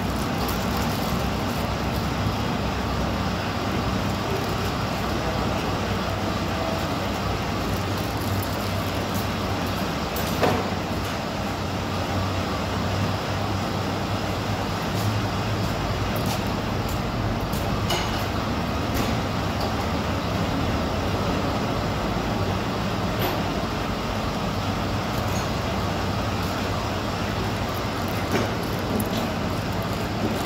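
Ford F-150's engine idling steadily while it warms up to full operating temperature after an automatic transmission oil and filter change, a low even hum in a reverberant workshop. A few short sharp clacks stand out, the loudest about ten seconds in.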